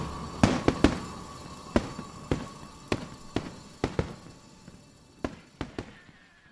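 Fireworks going off: about a dozen sharp bangs at irregular intervals, growing fainter.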